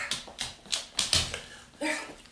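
A large dog's claws clicking irregularly on a hard, smooth floor as it steps and turns, several sharp taps a second. A brief voice-like sound comes near the end.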